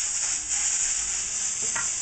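Shrimp fried rice sizzling in a hot wok, a steady hiss.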